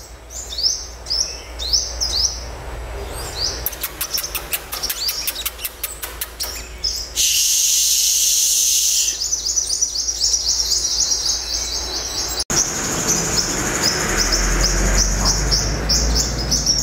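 Small songbirds, sunbirds among them, calling in a run of quick high chirps. A fast ticking trill comes around the middle, then a loud hiss for about two seconds, then more high chirping with a brief break before the end.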